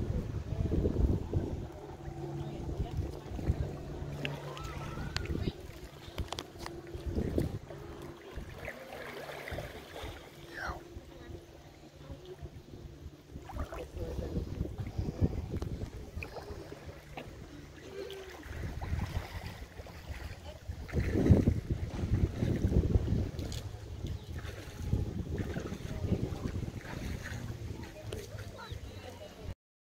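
Wind buffeting the microphone at the water's edge, in low gusts that strengthen near the start and again about two-thirds of the way through, with a steady low hum underneath.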